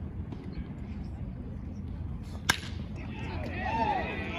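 Baseball bat hitting a pitched ball: a single sharp crack about two and a half seconds in. Voices call out right after it.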